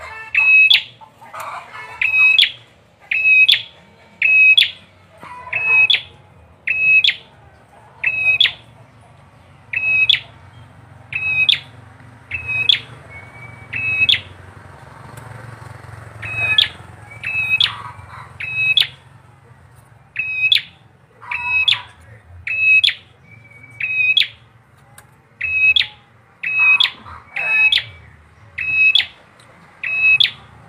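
Bar-winged prinia (prenjak or ciblek) calling a sharp, high, repeated note, about one call every second or so.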